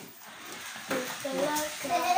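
Children's voices in a small room: quieter for the first second, then a child talking from about a second in.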